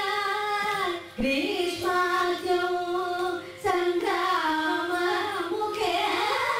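Two women singing a Carnatic ragamalika together, holding long notes with wavering ornaments. The singing breaks briefly twice, about a second in and again about three and a half seconds in.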